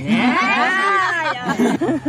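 A long, drawn-out vocal call that rises and then falls in pitch, lasting about a second and a half, followed by a couple of shorter calls.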